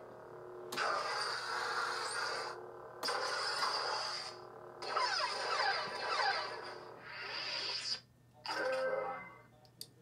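Neopixel Proffie lightsaber playing its soundfont effects through its speaker: a steady electric blade hum in several bursts that cut off and start again, with rising and falling swing swooshes in the middle as the blade is moved.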